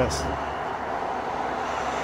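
Steady, loud outdoor noise of wind and passing road traffic.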